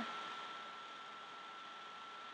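A quiet, steady hiss with a faint, steady high-pitched whine running through it: the background noise of the voice-over recording, with no other sound in it.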